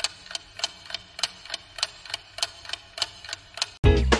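Ticking clock sound effect, an even tick-tock of about three ticks a second. Music cuts back in just before the end.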